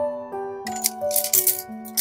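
Light background music, over a dry rattling clatter of a bundle of bamboo knitting needles being handled, starting a little over half a second in and coming in a few short runs.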